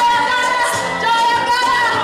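Women's voices singing long held, sliding notes into stage microphones over music.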